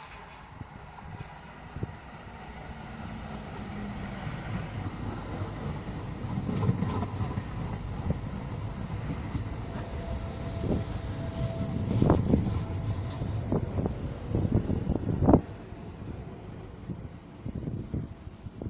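Two coupled Tyne and Wear Metrocars, an electric train, approaching and running into the platform, growing louder over the first few seconds. As the cars pass close there is a run of sharp clicks and knocks from the wheels over the rail joints, and the sound drops away sharply about fifteen seconds in as the train draws to a halt.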